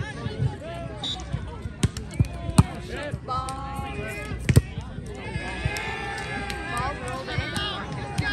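A volleyball being hit by hands: a quick run of sharp slaps about two seconds in and another at about four and a half seconds, over the voices and shouts of players and spectators.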